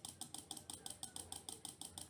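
Small blue PCB relay clicking rapidly and evenly, about nine faint clicks a second. Its armature pulls in and drops out over and over as the 470 µF capacitor across its coil charges and discharges, switching the LED on and off.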